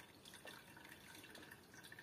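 Near silence, with faint dripping of whey from quark curds in a cheesecloth into the pot below.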